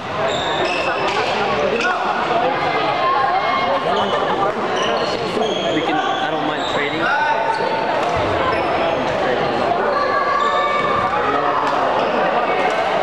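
Echoing gymnasium sounds of badminton play: sneakers squeaking in many short chirps on the hardwood floor, with racket-on-shuttlecock hits and background voices around the hall.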